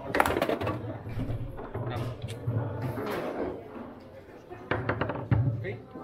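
Sharp clacks of table football play, with the ball struck by the plastic players and knocking against the table. They come in quick bunches, several near the start and again around five seconds in, over background music and voices.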